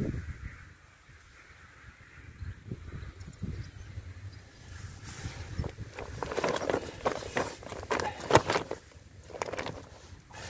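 Low wind rumble on the microphone, then from about five seconds in a run of rustles and knocks from handling close by, as a landed carp is handled on the grass; the sharpest knock comes near the end.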